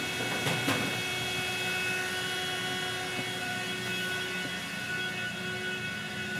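Steady mechanical drone of shop machinery running, holding several fixed tones throughout, with a couple of faint clicks under a second in.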